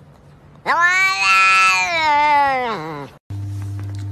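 A domestic cat gives one long meow lasting about two and a half seconds, starting under a second in, its pitch rising a little and then dropping at the end. After a short break, a steady low hum begins near the end.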